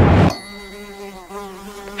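Trailer sound design: a loud rumbling swell cuts off suddenly, leaving a quiet, steady buzzing drone with a few slightly wavering pitches.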